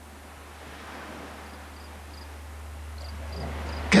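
Night-time outdoor ambience with crickets chirping faintly in short high notes over a steady low hum.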